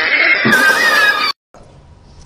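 A loud, high-pitched, wavering whinny-like cry, likely a meme reaction sound, that cuts off abruptly just over a second in, leaving only faint hiss.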